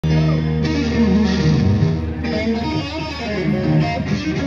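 Two amplified electric guitars trading lead phrases back and forth, live, in a call-and-response 'guitargument', mixing held notes and quick runs.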